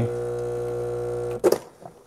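Breville Barista Express vibratory pump humming steadily as it pushes water through the puck at the end of an espresso shot, then shutting off about one and a half seconds in as the shot is stopped at its target weight, with a short click as it stops.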